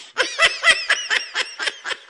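High-pitched laughter in rapid, repeated pulses, loudest in the first second and thinning out toward the end.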